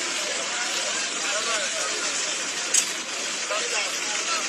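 Outdoor street sound from a phone video played back: a steady noisy hiss with indistinct voices of people around parked minibuses, and one brief sharp click about three quarters of the way through.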